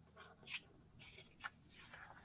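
Near silence: call-audio room tone with a few faint short sounds.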